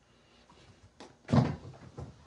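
A sharp click, then a loud hollow thump with a brief clatter, followed by a few lighter knocks near the end.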